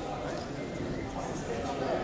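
Hubbub of many people talking at once in a large chamber, with scattered footsteps as members move to their seats.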